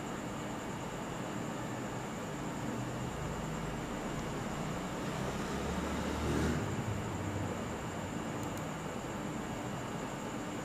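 Steady background hiss and hum of the recording microphone's room noise, with a faint high whine. A low rumble swells and fades about five to seven seconds in.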